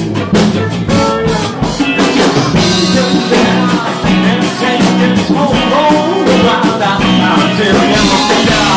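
Live rock band playing loudly: a drum kit keeping a steady beat under guitar, with singing.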